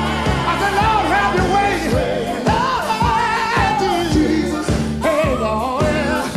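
Gospel song: a singer holds long, drawn-out vocal runs with a wavering pitch over a steady drum beat and bass.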